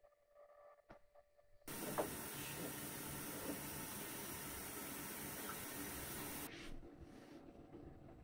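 Steady rushing hiss of kitchen activity that starts suddenly about two seconds in, with a few light clinks in it, then drops to a quieter hiss near the end.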